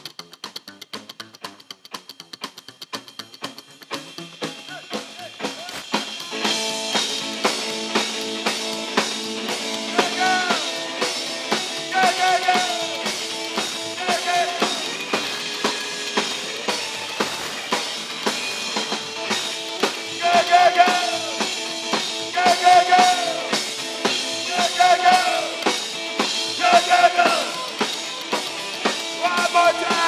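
Live rockabilly band of drums, upright double bass and hollow-body electric guitar playing a song. It opens with a sparse, fast clicking beat, and the full band comes in louder about six seconds in.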